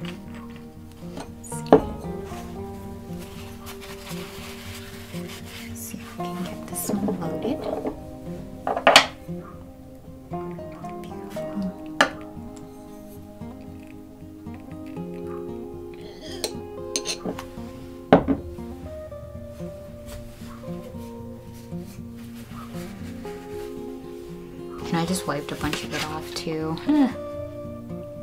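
A few sharp clinks and knocks of glass and metal as a small glass ink bottle is handled and opened and a dip pen's metal nib is dipped into it, over steady background music.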